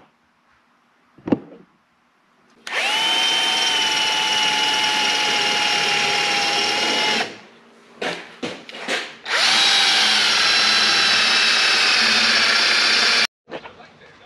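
Compact cordless drill boring through 3/16-inch flat steel bar stock with a twist bit: the motor spins up and runs in a steady whine for about four seconds, gives a few short trigger blips, then runs steadily again for about four seconds before cutting off suddenly near the end.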